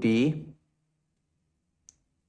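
A man's voice finishes a short spoken word, then near silence with one brief, faint click near the end.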